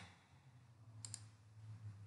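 Two quick computer mouse clicks close together about a second in, over a faint low hum.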